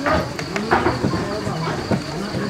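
Indistinct background chatter of several voices, with a couple of light clicks in the first second.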